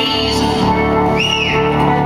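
Live solo performance on a keyboard instrument, playing steady held chords. A brief high tone rises and falls about a second in.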